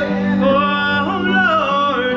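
A woman singing a worship song, accompanying herself with held chords on an electronic keyboard; her voice moves through a melody over the sustained chords.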